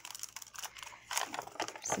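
Sheets of coffee-dyed paper rustling and crackling as they are picked up and handled, a quick irregular run of crisp crackles.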